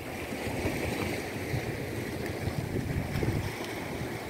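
Wind rumbling irregularly on the microphone over a steady hiss of the sea.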